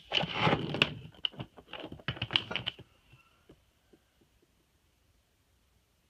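A quick run of light clicks and taps from hands handling a hardshell guitar case, lasting about three seconds, then a few faint ticks and near quiet.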